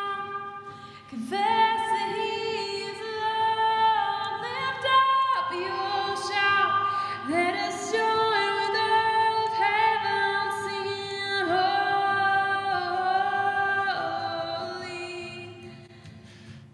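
Solo sung vocal track played back through reverb, unaccompanied: long held notes with slides between them, fading away near the end as playback stops. The reverb plugin's latency is being compensated, and the result "sounds much better".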